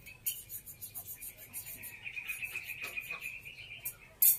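Faint, steady high-pitched trill of a calling insect, with a quick run of faint ticks in the first second.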